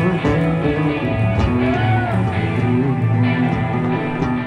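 Loud live rock trio heard from the audience: a vintage Fender Precision bass carrying heavy, slightly driven low notes under electric guitar and drums.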